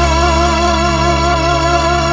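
Balinese pop song in an instrumental passage: one long held melody note with a slight waver over steady backing.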